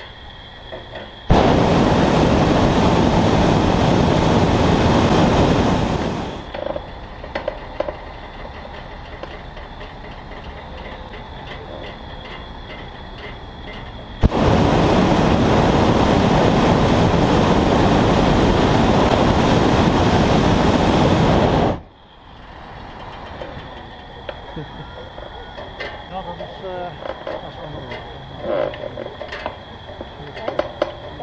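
Hot-air balloon's propane burner firing loudly twice: a blast of about five seconds, then after a pause another of about seven and a half seconds, each starting and cutting off sharply.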